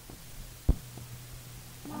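A pause in group chanting filled by a steady low hum, broken by one sharp low thump about a third of the way in and a fainter tap soon after; the chanting voices come back in right at the end.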